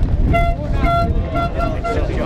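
A horn tooting about seven short blasts on one steady note, over a constant low rumble and crowd voices.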